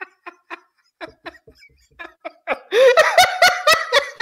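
A man laughing: a string of quiet breathy snickers that breaks into a louder fit of laughter about three seconds in.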